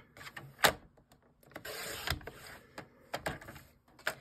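Sliding-blade paper trimmer cutting a sheet of patterned paper: a sharp click a little over half a second in, then about a second of the blade carriage scraping along its track through the paper, followed by a few light clicks as the paper is handled.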